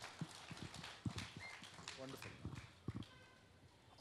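Faint, scattered light clicks and knocks over low background noise, with a brief faint pitched sound about halfway through, dying away to near silence in the last second.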